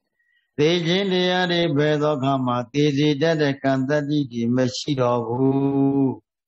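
A Buddhist monk's voice reciting in a chant-like intonation into a microphone, starting about half a second in after a brief silence.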